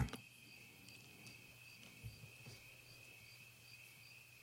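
Faint cricket chirping: a steady high trill with a softer pulse about three times a second.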